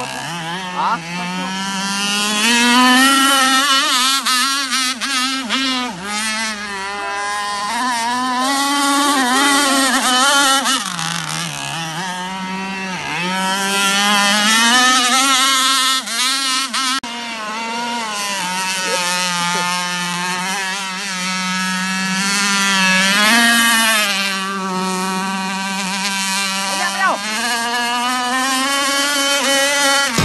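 Radio-controlled powerboat's two-stroke chainsaw engine running hard at speed, its high buzzing note dropping and climbing again several times as the throttle is eased and opened.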